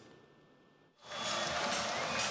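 Near silence for about a second, then the crowd noise of a packed indoor handball arena cuts in suddenly and holds at a steady level.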